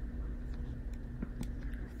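Quiet room tone with a steady low hum, and two faint sharp clicks a little over a second in.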